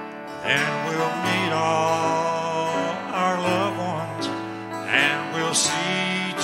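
Live country gospel song: several singers on microphones sing held, sustained notes over a strummed acoustic guitar.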